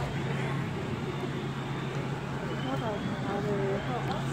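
Fire apparatus engine running steadily at a fire scene, a constant low drone, with faint distant voices.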